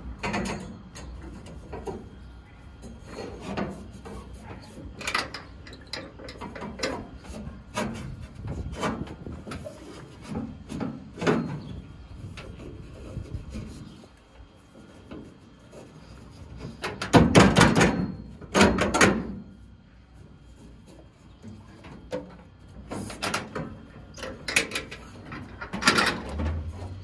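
Handling noises of nylon cord being wrapped and pulled tight around metal square tubing: rope rubbing and sliding, with irregular knocks and clicks throughout and two louder clatters about two-thirds of the way through.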